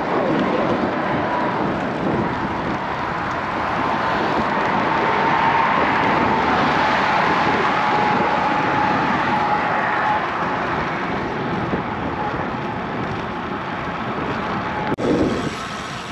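Steady rushing of wind on the microphone and road traffic passing while riding a road bike in a gusty crosswind. A faint steady whine comes in for a few seconds in the middle, and a single click sounds near the end.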